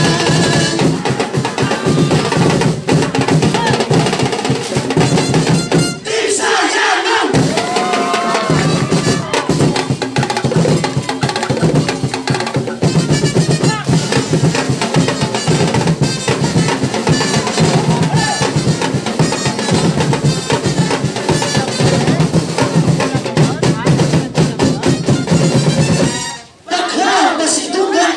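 Loud, drum-heavy festival dance music: a percussion ensemble pounding out a fast, steady beat with a drum roll feel. The low drums break off briefly about six seconds in before the beat comes back, and it stops abruptly at the end.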